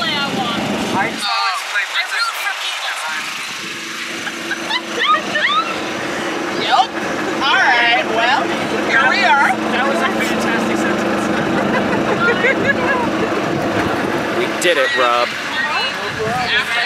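A golf cart under way with a steady motor hum, and high, excited voices calling out over it.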